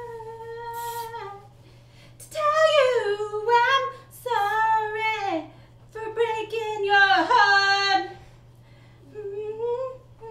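A woman singing to herself without accompaniment, in short phrases of long, sliding notes with brief pauses between them.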